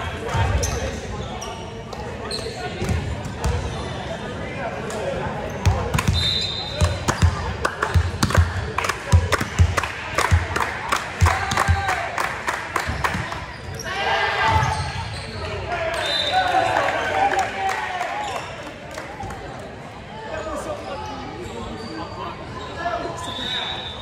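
A volleyball being bounced again and again on a hardwood gym floor, about two bounces a second for several seconds in the middle, echoing in a large gym over indistinct voices.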